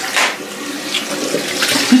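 Water running steadily from a bathroom tap into the sink, with a brief louder noise shortly after the start.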